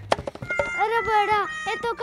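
A young girl's high-pitched voice calling out in long, drawn-out, wavering tones over background music, starting about half a second in after a single sharp knock.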